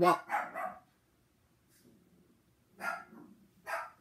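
Domestic dog barking: two short barks near the end, under a second apart.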